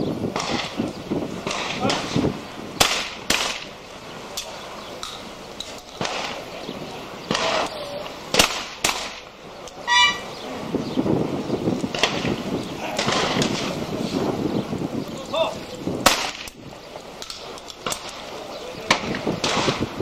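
Shotgun shots on a clay-target range, mostly in pairs about half a second apart, the second barrel following the first at the same clay. There is a short pulsed high tone about halfway through, and voices murmur between the shots.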